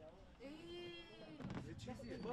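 A faint, drawn-out call about a second long that arches gently in pitch, followed by faint voices in the background.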